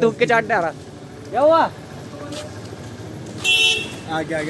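A vehicle horn sounds once, a short toot of about half a second near the end, over low street traffic noise.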